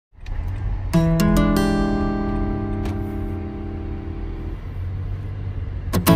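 Background music: an acoustic guitar picks a quick run of notes about a second in and lets them ring and fade, over a low steady rumble, with rhythmic strumming starting right at the end.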